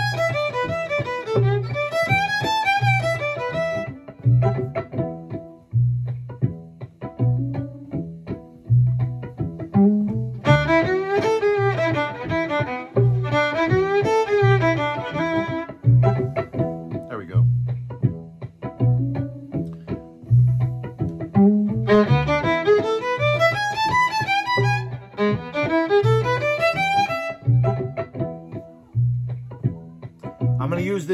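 A fiddle plays short bluesy call phrases in E over a backing groove with a steady bass pulse. There are three phrases: at the start, about ten seconds in, and about twenty-two seconds in. Between them only the backing groove plays, leaving room for the listener to echo each line.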